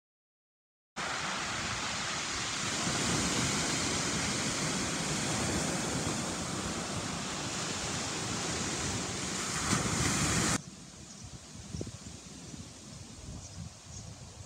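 Sea waves breaking and washing over a pebble beach: a steady rush of surf that starts suddenly about a second in and cuts off abruptly near the end, leaving only a faint outdoor background.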